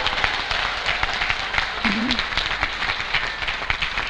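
Audience and onstage finalists applauding, a dense, even patter of many hands clapping, with a brief voice sound about halfway through.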